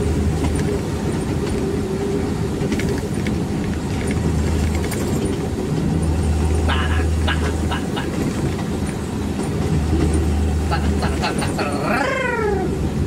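Engine and road noise inside the cab of a moving vehicle: a steady low drone whose deepest hum fades and returns a few times.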